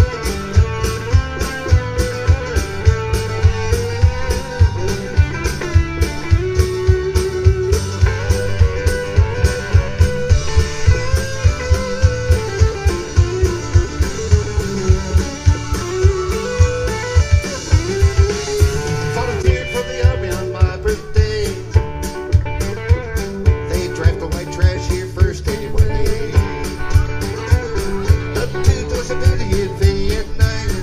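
Live band playing an instrumental break with no vocals: a bending lead melody line with guitar over a steady drum beat.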